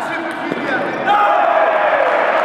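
Spectators and players shouting and cheering as a table tennis point ends, several voices at once, growing louder from about a second in.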